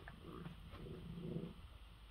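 A cat eating dry kibble: a couple of crisp crunches, then a quick run of soft chewing sounds.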